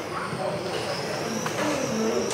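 Radio-controlled model racing cars running laps on an indoor track, their motors giving a high whine that rises and falls, over a murmur of voices.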